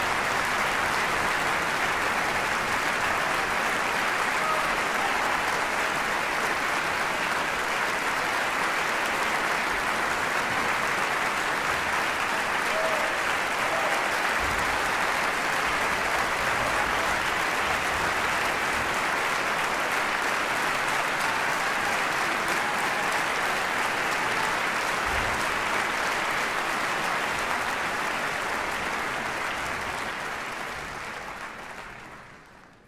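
Concert-hall audience applauding steadily, a dense even clapping that begins to fade near the end.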